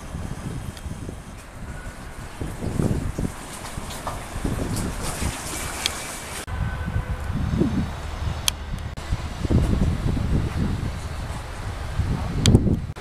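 Wind buffeting the microphone in gusts: an uneven low rumble that rises and falls.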